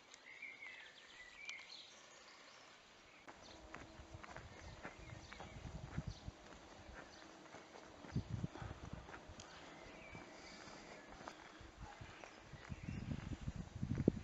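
Faint footsteps of a walker on a paved street: light ticks, with heavier low thuds in the second half. A bird chirps briefly near the start.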